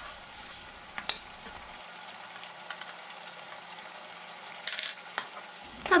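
Oil-and-vinegar tomato sauce sizzling at the boil in a non-stick pan while a wooden spoon stirs it. A few light knocks of the spoon against the pan come about a second in and again near the end.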